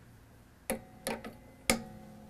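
Wire cutters snipping the excess end of a steel acoustic-guitar string at the tuning peg: three sharp clicks, each followed by a brief ringing of the string.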